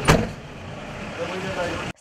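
A police van door shuts with a single bang, followed by faint voices of people standing around the vehicle.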